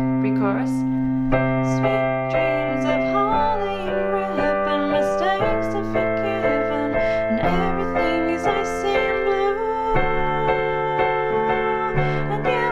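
Piano playing a chord accompaniment, sustained block chords with the bass changing every couple of seconds through a C, G, A minor, F, D7 progression. A voice sings the melody over it.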